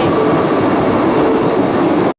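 Postojna Cave's tourist train running along its rails, heard from aboard as a steady rattling rumble with a faint steady whine.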